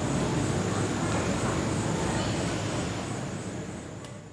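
Steady outdoor background noise, a low rumble, fading out over the last second or so.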